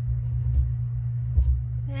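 A steady low hum, with two soft knocks about half a second and a second and a half in, as fingers press and shape modeling clay on a board.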